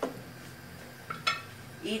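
A spoon stirring chicken pieces in sauce in a cooking pot. It clinks against the pot once at the start and again about a second later.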